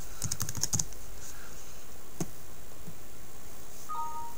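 A quick burst of computer keyboard keystrokes, then one more click about two seconds later. Near the end comes a short two-note chime, stepping down in pitch: the Windows message-box sound.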